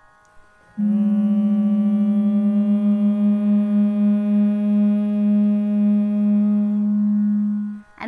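A woman hums one long held note against a steady reference note. She starts slightly below the reference and slides up to it, so the wavering beat between the two is fast at first, slows, and dies away as the pitches match, which shows the note is now in tune.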